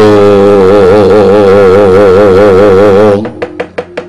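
A singing voice in wayang kulit, holding one long note with a wide, even vibrato. About three seconds in it breaks off into a rapid run of sharp knocks from the dalang's cempala and keprak on the puppet chest.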